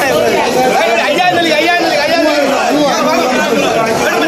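Crowd chatter in a fish market hall: many men talking over one another at once, a dense, unbroken babble of voices.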